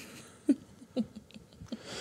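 A few short, faint breathy vocal sounds from a person, the clearest about half a second and a second in, each dropping in pitch.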